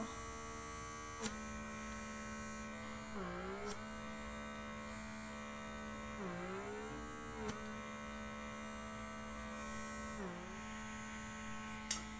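Handheld blackhead vacuum's small electric suction motor running with a steady whirring hum. Its pitch sags and recovers three times, about three, six and ten seconds in, and there are a few faint clicks.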